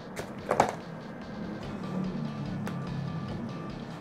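Quiet background music with a few low notes. Near the start there are two short clicks and rustles from a microphone being handled and fitted onto a small tripod.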